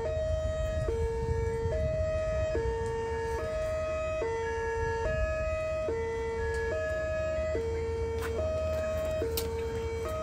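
Miniature bosai musen horn loudspeaker sounding a hi-lo two-tone siren: a lower and a higher tone take turns evenly, each held a little under a second, with no pause between them.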